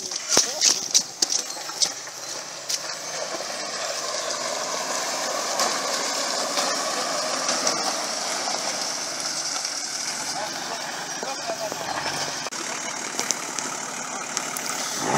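Nissan Patrol 4x4's engine running with a steady drone, a little louder in the middle. A few knocks and clicks come in the first couple of seconds.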